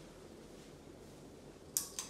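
Hunter Oakhurst ceiling fan running with a faint, steady hum and air noise, then near the end a sharp click from the light kit's pull-chain switch as the lights are turned on.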